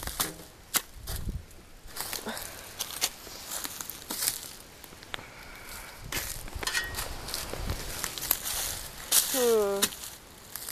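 Footsteps crunching through dry leaf litter and twigs on a forest floor, an irregular run of crackles and snaps, with camera-handling rubs. A brief voice sounds near the end.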